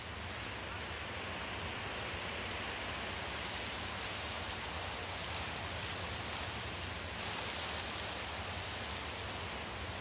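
Steady, even rushing noise with no clear source, like a wind or surf ambience bed.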